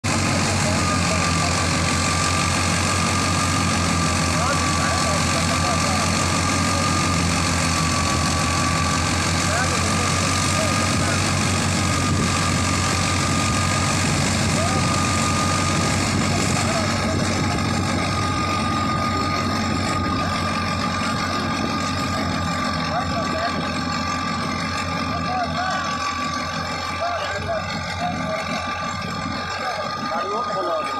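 Tractor diesel engine driving a wheat thresher, both running steadily under load as straw is fed into the drum. A low engine drone runs under a steady high whine.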